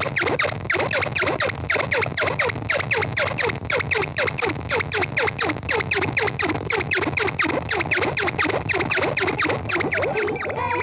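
Live electronic noise music from a rig of effects pedals and synthesizers: a fast, steady train of falling-pitch electronic chirps, several a second, over a low droning rumble.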